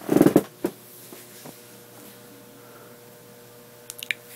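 A brief burst of handling noise as the phone is moved, then quiet room tone with a faint steady electrical hum and a couple of small clicks near the end.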